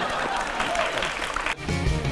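Studio audience applauding. About a second and a half in, the applause cuts off and a short music sting starts.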